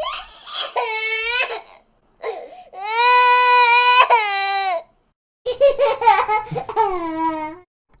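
A high, child-like voice crying in pain: three long wails with short breaks between them, the middle one held longest.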